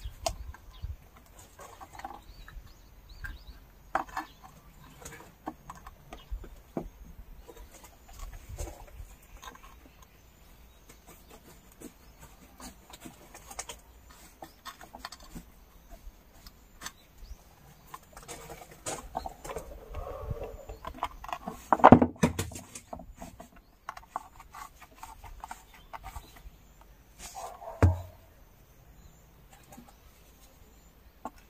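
Volcanic rocks being handled and set down on a stone slab: scattered light knocks, clicks and scrapes, with a louder knock about two-thirds of the way through and another a few seconds later.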